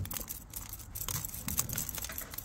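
Metal tweezers picking through a succulent's root ball to loosen old potting soil, making light, irregular ticks and scrapes as grit falls into the basin below.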